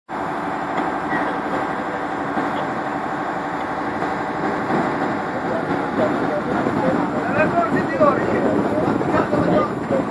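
Diesel engine of a lattice-boom crane running steadily while it hoists a load. Several voices start talking over it about halfway through.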